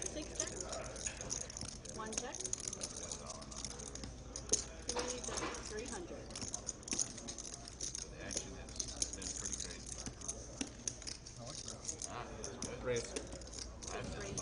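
Clay poker chips clicking and clattering as players riffle, stack and bet them at the table, many small sharp clicks throughout, with faint table talk underneath.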